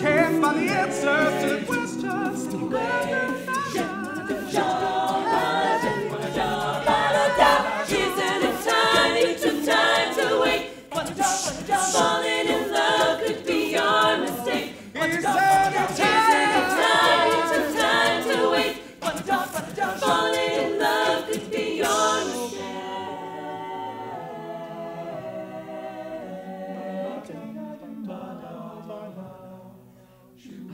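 Co-ed a cappella group singing in close harmony, a lead voice over the backing singers, with a beat of sharp percussive sounds. About three-quarters of the way through the beat stops and the group holds softer, sustained chords.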